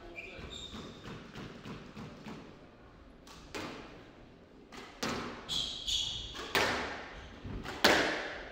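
Squash rally: a hard rubber squash ball is struck by racquets and smacks off the court walls in a string of sharp cracks, closer together and louder in the second half, the loudest just before the end. Short high squeaks from court shoes on the wooden floor come in between.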